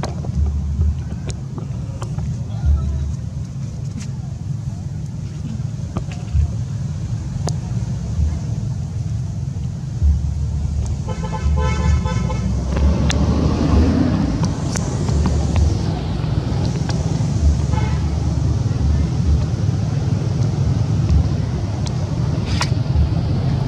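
Outdoor background of steady low rumble with wind buffeting the microphone. About halfway through, a vehicle horn toots for about a second and a half, and the noise swells for a few seconds after it.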